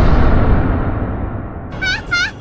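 A deep rumbling boom from an outro sound effect fades away slowly. Near the end a quick string of high, squeaky cries begins, repeating about three times a second.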